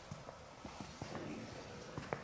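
Footsteps on a hard stone floor: a string of light, irregular taps.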